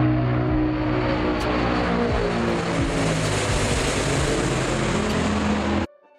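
Antonov An-22 Antei's four turboprop engines with contra-rotating propellers droning as the aircraft passes low overhead, the propeller tones sliding slowly down in pitch. The sound cuts off abruptly near the end.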